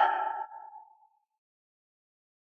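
The echoing tail of a man's drawn-out shout, ringing on a steady note and fading out within the first second, then dead silence.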